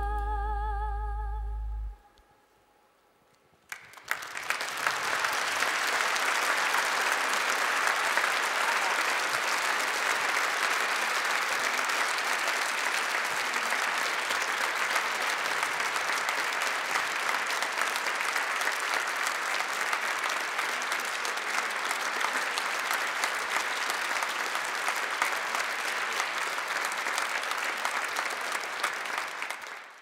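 A woman's final held sung note, wavering with vibrato, ends about two seconds in. After a moment's hush, the audience breaks into steady applause, which fades out at the very end.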